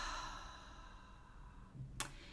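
A woman's soft sigh, a breathy exhale that fades away over about the first second, then quiet room tone with a faint click near the end.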